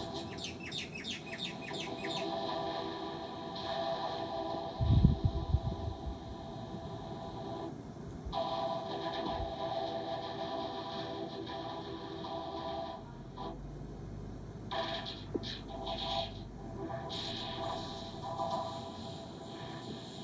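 Effect-processed TV channel logo jingles played through a tablet's speaker, with fast rising chirp-like sweeps in the first two seconds and then held, layered tones that shift in blocks. A loud low thump about five seconds in.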